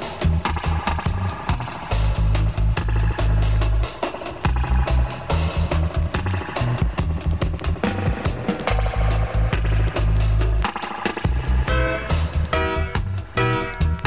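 Roots reggae dub instrumental broadcast on FM radio: a heavy bass line and drums with no vocals. A melody line comes in near the end.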